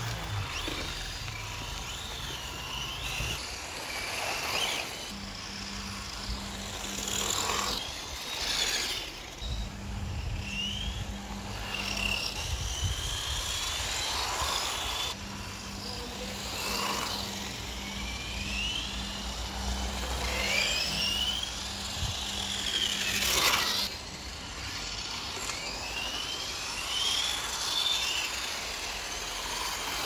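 Electric 1/10-scale RC rally cars driving on tarmac: motor whines that rise and fall in pitch again and again as they speed up and slow down, with tyre noise swelling as a car passes close by.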